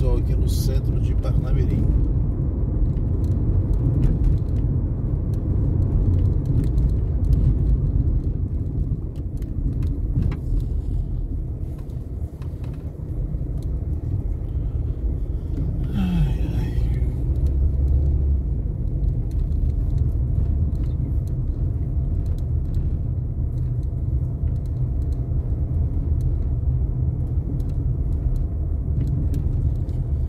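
Car driving in slow town traffic, heard from inside the cabin: a steady low rumble of engine and tyres on the road. A short sound with a falling pitch breaks through just past the middle.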